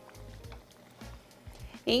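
Soft background music over the faint sizzle of dough rings frying in hot oil, with light clicks of metal forks turning them in the pot.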